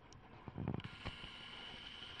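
Faint, steady whirring whine of a video camera's zoom motor, starting abruptly about a second in as the lens zooms out.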